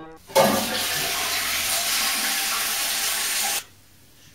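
Toilet flushing: a rush of water that starts suddenly just after the beginning, runs steadily and cuts off abruptly near the end.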